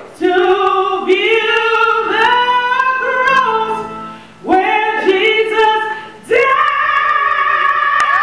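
A woman singing gospel into a microphone, amplified, in three phrases of long sustained notes, the last one held out steadily.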